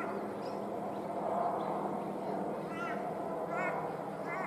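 Outdoor ambience in which a bird gives two short calls near the end, over a steady background hum.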